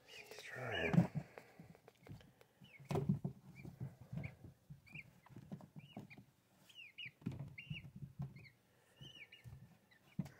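An Ayam Cemani chick peeping, short high chirps every second or so, with soft scuffs and knocks as it moves about in a plastic tub.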